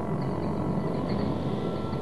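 A steady low rumbling drone with faint high tones above it, the background sound design under the animation.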